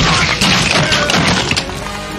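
Action-film fight soundtrack: loud background music with a dense flurry of hit and crash sound effects through the first second and a half, then the music carries on more quietly.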